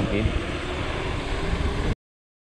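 Wind buffeting the microphone of a handlebar-mounted action camera on a moving mountain bike, a steady low rumble with tyre noise on pavement. It cuts off suddenly just before the end.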